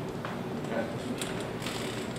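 Handling noise: a few short clicks and rubs, bunched in the second half, over the steady murmur of a room full of people.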